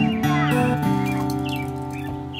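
Acoustic guitar being picked, notes ringing and slowly dying away, with birds chirping briefly in the background.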